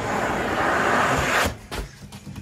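A rolled carpet's rough backing scraping across the camera's microphone, giving a steady, loud rushing noise that cuts off suddenly after about a second and a half. A couple of faint knocks follow.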